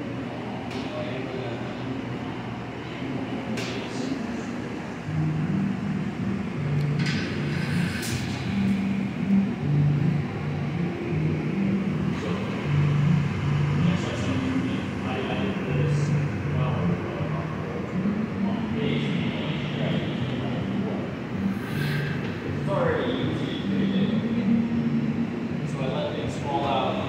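Steady roar of a gas-fired glass furnace (glory hole) in a glassblowing studio, with people's voices in the background.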